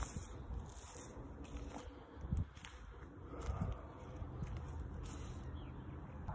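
Faint outdoor background noise with a low rumble and a few soft thumps about two and a half seconds in.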